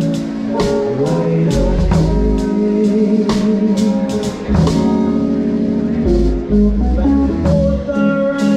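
A live band playing a song: drum kit with regular cymbal and snare strikes over deep bass notes and guitar.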